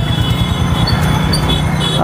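Motorcycle riding at low speed, its engine and wind on the phone's microphone making a steady, loud rumble, with a thin high steady whine over it.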